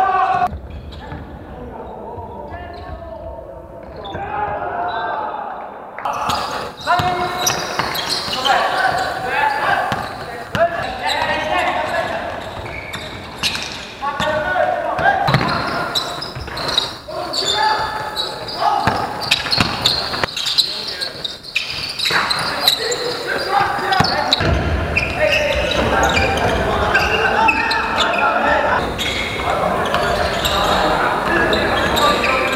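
Basketball game play in a gym hall: the ball bouncing on the court and players' voices calling out, echoing in the large room.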